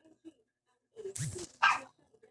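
A brief, loud animal call about a second in, ending in a sharp burst.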